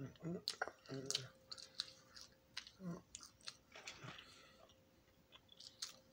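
A person chewing french fries close to the microphone: a run of wet mouth clicks, dense in the first few seconds and thinning out toward the end, between a few short murmured words.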